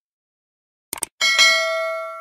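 Sound effects from a subscribe-button animation: a quick cluster of mouse clicks about a second in, then a bright notification-bell ding, struck twice in quick succession, that rings on and slowly fades.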